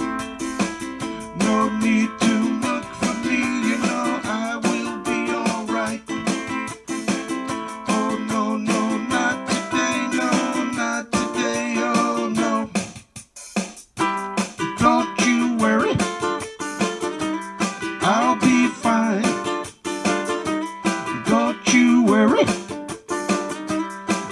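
Acoustic song: a plucked-string accompaniment with a man singing. The music breaks off briefly about thirteen seconds in.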